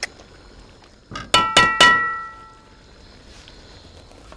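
Three quick metallic clangs that ring on briefly, a metal kitchen utensil knocked against a stainless steel cooking pan.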